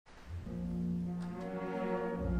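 Orchestra playing a low held chord with brass, starting about a third of a second in.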